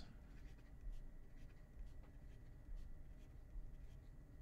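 Pen writing on paper: faint, scattered scratching strokes as numbers are written out by hand.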